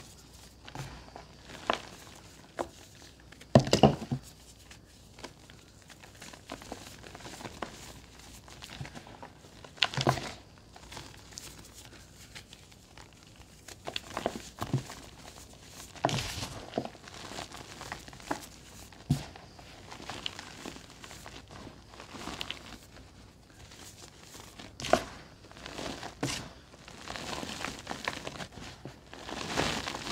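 Hands crushing and crumbling pressed cylinders of Ajax scouring powder, corn flour and baby powder, giving irregular soft crunches and the crumbling of dry powder. The loudest crunch comes about four seconds in, with others near ten, sixteen and twenty-five seconds.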